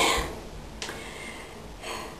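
A person's breathing: a sharp, loud breath out at the start, a faint click just under a second in, and a softer breath in near the end.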